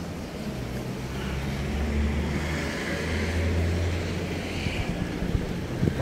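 Street traffic: a motor vehicle's low engine hum that builds about a second in and fades away near the end, over general street noise.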